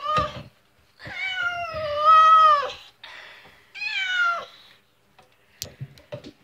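Stray black cat meowing: a short call at the start, then one long drawn-out meow of nearly two seconds, then a shorter meow falling in pitch. A single sharp click near the end.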